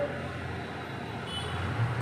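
Low, steady rumble of road traffic in the background, growing slightly louder toward the end.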